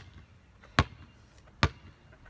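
Basketball bounced on a concrete driveway, dribbled from hand to hand in a V. There is one bounce right at the start, then two more a little under a second apart.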